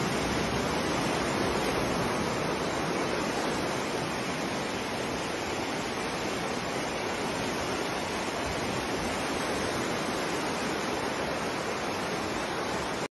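Floodwater torrent rushing downhill, a steady, loud rush of muddy water carrying debris.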